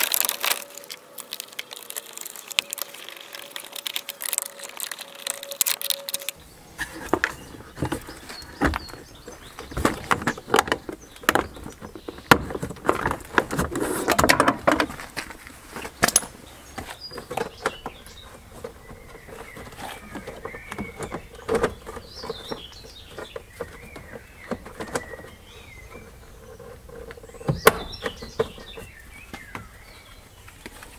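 Plastic engine-bay trim and the battery-box cover being handled and pushed back into place: a run of irregular clicks, knocks and rattles. Birds chirp faintly in the background.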